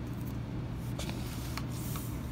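Faint rustling and a few light ticks of protective plastic film being peeled off a wristwatch, over a low steady hum.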